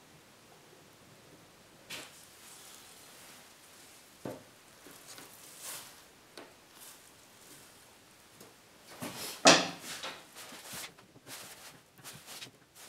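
Wooden moulding strips handled and set down on a workbench: scattered light knocks and rustles, with a sharper knock and short clatter about three-quarters of the way through.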